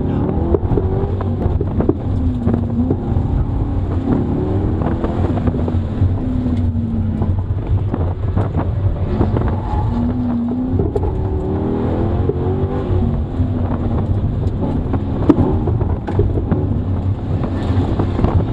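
Chevrolet Corvette's V8 heard from inside the cabin under hard driving, its note rising and falling again and again as the car accelerates and lifts, over a steady low drone. A few sharp knocks are heard along the way.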